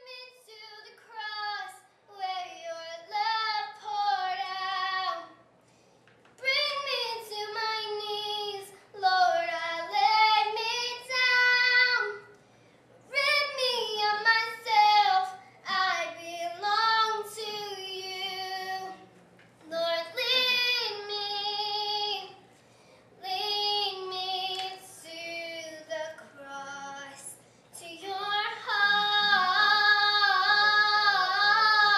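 A single high voice singing, mostly unaccompanied, in sustained phrases a few seconds long with short pauses for breath between them.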